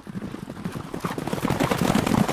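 Hoofbeats of several galloping horses, a fast dense run of thuds that grows louder toward the end.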